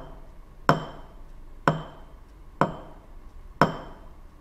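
Glass cup lid tapped on a desk four times, about once a second, each a sharp knock with a short glassy ring.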